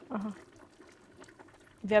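Faint pouring and trickling as boiled broad beans and their hot cooking water are ladled from a pot onto a metal tray, between a short spoken word just after the start and another at the end.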